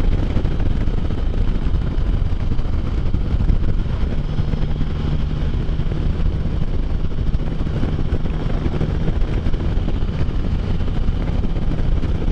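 Can-Am Spyder three-wheeled motorcycle riding at road speed: a steady engine drone mixed with wind rush, with a low steady engine note that comes up about four seconds in and fades back near nine seconds.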